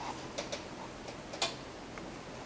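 A few light, sharp clicks scattered over about a second and a half, the loudest about one and a half seconds in, against quiet room tone.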